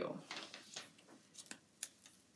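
Faint handling of a laser-cut cardstock strip: light paper rustles and a few small ticks, the sharpest just before the end.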